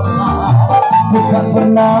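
Live dangdut band playing: electric guitar and plucked strings over keyboard and a steady bass line, with a short sung 'oh' near the end.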